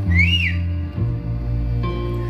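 A live indie-folk band plays a slow instrumental passage with deep sustained bass notes that change to a new note about a second in. A short whistle rises and falls in pitch near the start.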